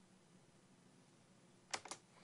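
Near silence of room tone, then two quick clicks close together near the end, as of a computer key or button being pressed.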